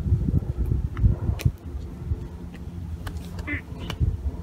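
Wind rumbling unevenly on the microphone, with a few sharp clicks and light scrapes over it.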